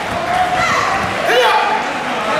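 Raised voices shouting over one another, with pitch that swoops up and down, and scattered dull thuds underneath, echoing in a large hall.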